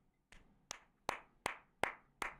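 One person clapping hands in a steady rhythm, about five claps at roughly two and a half a second, in approval.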